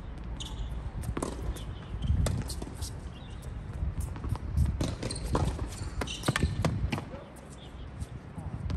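A tennis rally on an outdoor hard court: a racket strikes the ball and the ball bounces on the court, heard as irregular sharp knocks, along with footsteps on the court surface.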